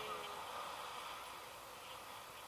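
Steady rush of wind over the camera's microphone during a tandem paraglider flight, easing slightly toward the end.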